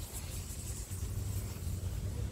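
Low, steady rumble of a vehicle engine running.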